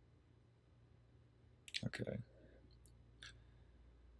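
Mostly near silence, broken by a short spoken "okay" just before the middle and a few faint, brief clicks of a computer mouse in the second half.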